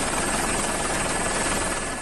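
Steady noise of a helicopter in flight, heard from on board, with a faint high whine running through it; it eases slightly near the end.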